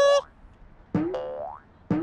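Cartoon boing sound effects of a space hopper bouncing: springy thumps, each followed by a rising twang. A quick pair comes about a second in and another near the end.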